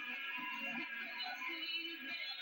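Live rock band playing a cover song with a singer's voice over guitars and drums. The recording sounds thin, with little bass.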